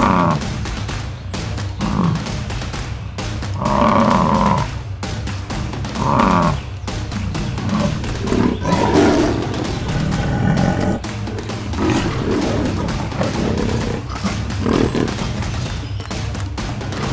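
Background music with cartoon sound-effect lion roars and growls laid over it, the calls coming every couple of seconds.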